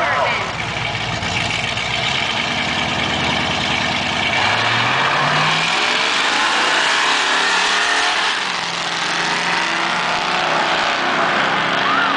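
Pontiac Trans Am and pickup truck engines running at the drag strip start line, then revving hard as the cars launch about four seconds in, the engine note climbing in pitch as they accelerate away down the quarter mile.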